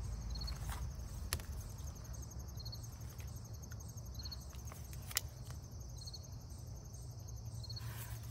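Insects chirping in late summer: a steady pulsing trill, with a short chirp repeating about every second and a half, over a low rumble. Two sharp clicks come about one and five seconds in.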